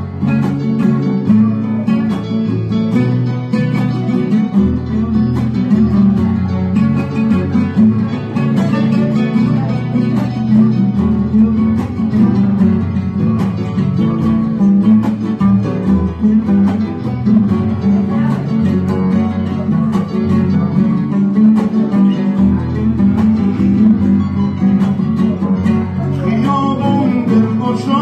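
Live instrumental ensemble: an acoustic guitar and an oud plucking a melody over a Korg arranger keyboard's accompaniment, playing steadily throughout.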